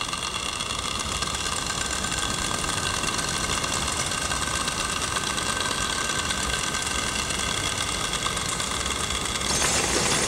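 Experimental noise recording: a dense, steady wash of noise with several sustained high tones over a low rumble. It turns louder and brighter near the end.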